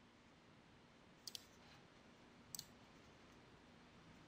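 Faint computer mouse clicks over near-silent room tone: a quick double click about a second in, then another click past the halfway point, as the downloaded support program is opened.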